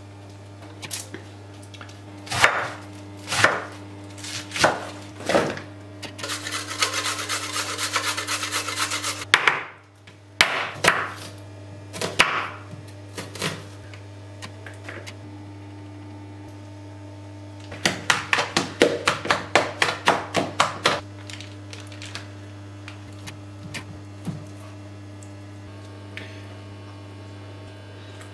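Knife chopping vegetables on a plastic chopping mat: single cuts about a second apart, stretches of fast, dense chopping (the quickest about five chops a second), and a few quiet pauses between. A steady low hum runs underneath.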